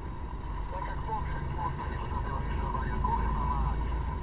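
Road vehicle driving along a paved road, heard from inside: a steady low rumble of engine and tyres.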